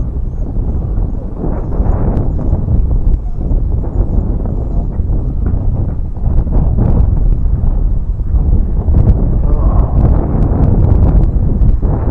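Wind buffeting the microphone, a heavy low rumble throughout, with scattered crunches and clicks of footsteps on a gravel shore.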